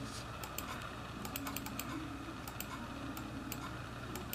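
Light, irregular clicking at a computer as a printer-driver setup wizard is stepped through: a dozen or so sharp clicks, bunched together around the middle, over a faint steady hum.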